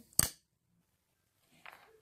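A single sharp wooden clack from a wooden Jacob's ladder toy, blocks joined by ribbons, as it is set going, then near silence.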